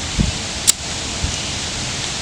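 A steady breeze rushing over the microphone, with leaves rustling. A low thump comes just after the start, and a short sharp click follows about a second in.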